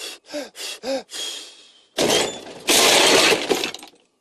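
A character's short rising-and-falling vocal cries in the first second. About two seconds in comes a loud cartoon crash effect of breaking glass and clatter, lasting about a second and a half.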